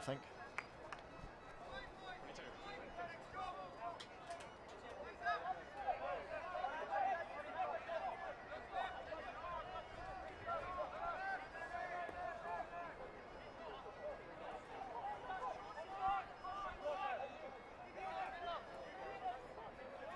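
Faint, overlapping shouts and chatter of many voices around a rugby pitch, heard at a distance through the field microphone, with no voice standing out.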